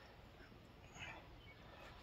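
Near silence, with one faint short sound about a second in.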